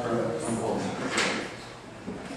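Indistinct voices of several people talking at once in small groups, with no single clear speaker.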